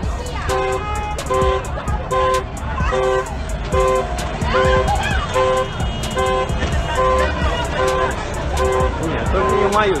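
Car horn beeping over and over in short, evenly spaced blasts, about three every two seconds, over street traffic noise.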